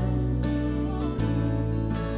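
Live worship band playing a slow song: guitar strumming over sustained bass and keyboard chords, with a chord change a little past a second in.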